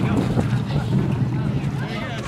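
Bodies wading and crawling through thick liquid marsh mud, sloshing and splashing, with wind buffeting the microphone.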